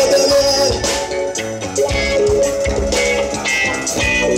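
Live band music: plucked cavaquinho and keyboard over drums and percussion, with no singing.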